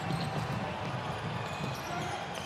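A basketball dribbled on a hardwood court as players run up the floor, over steady arena background noise.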